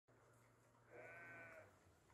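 A single drawn-out farm-animal call, about two-thirds of a second long, starting about a second in.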